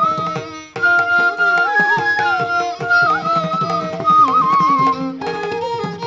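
A Carnatic bamboo flute plays a melody of held and sliding, ornamented notes, with hand-drum strokes underneath. The music breaks off briefly just under a second in, then the phrase resumes.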